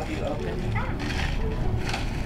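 Indistinct voices over steady room noise, with a few short hissy rustles.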